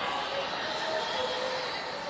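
Steady background hiss of a large room with no distinct event, a continuous even noise at moderate level.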